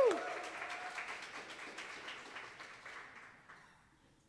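Audience applauding, opened by a single loud "woo" cheer. The clapping fades out over about three and a half seconds.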